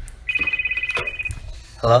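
Landline telephone ringing: a rapid, warbling high-pitched electronic trill lasting about a second, then cut off as the call is answered with a spoken "Hello?"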